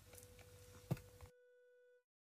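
Faint steady electronic tone with a sharp click about a second in. Moments later the background hiss drops away, leaving the tone on its own until it cuts off abruptly.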